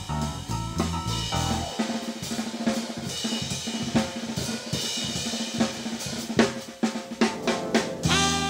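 Live jazz drum kit played alone: snare, bass drum, hi-hat and cymbals in a busy break after the bass drops out about two seconds in, with a run of loud accents near the end.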